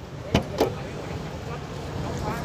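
Two short, sharp clicks about a quarter second apart over a steady low hum.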